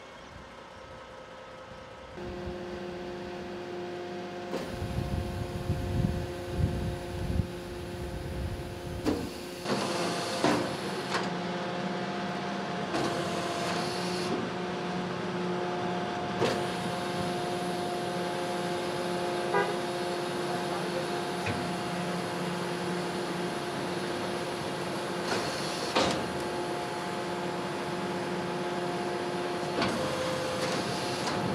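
Refuse collection truck's hydraulic bin-lift system running with a steady mechanical hum that starts about two seconds in, while the rear lifter raises a wheelie bin. A few sharp metal clanks come through, the loudest about ten seconds in and again near the end.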